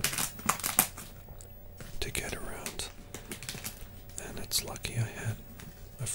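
Popcorn being chewed, with crunchy clicks and crinkling strongest in the first second, alongside soft whispering.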